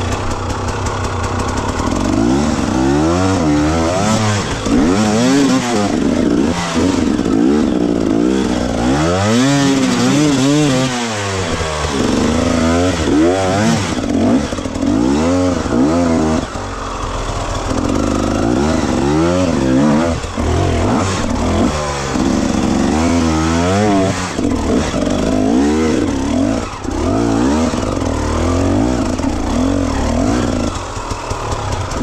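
Enduro dirt bike engine revving up and down over and over as it climbs a steep, rutted trail, the throttle opened and closed in short bursts. The revving eases briefly about halfway through and again near the end.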